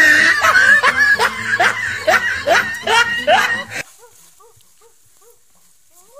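Loud, rhythmic laughter in a run of 'ha-ha-ha' pulses, about two a second, that cuts off abruptly about four seconds in. Faint short chirps follow.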